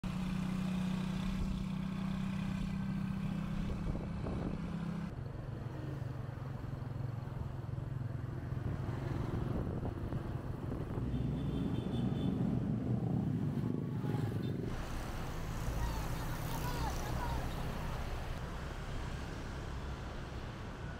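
Motorbike engines running as laden riders move along a street, a steady low engine hum over road noise. The hum changes pitch about five seconds in and again near fifteen seconds.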